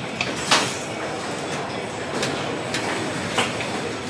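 Car-factory assembly-line din: a steady noisy rumble with scattered clanks and knocks, the loudest about half a second in.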